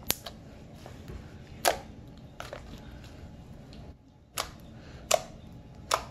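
Purple glitter slime poked and pressed with fingertips, giving a string of short, sharp pops and clicks, about seven of them at uneven intervals, the loudest about a third of the way in and again near the end.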